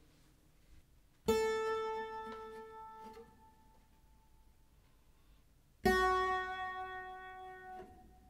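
Clavichord playing two long notes, an A and then an F-sharp about four and a half seconds later, each struck, held and fading over about two seconds. The key is rocked for Bebung, a slight wavering in the tone, with a soft click as each key is released.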